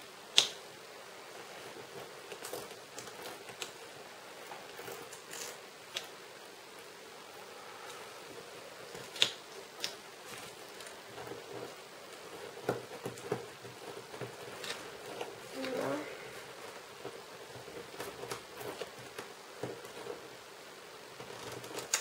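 Small paper sounds of stickers being handled and pressed onto a paper planner page: light taps, rubs and rustles, with two sharp clicks, one just after the start and one about nine seconds in.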